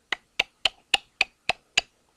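Computer mouse clicking repeatedly while scrolling a file list: seven sharp clicks, evenly spaced at roughly three to four a second.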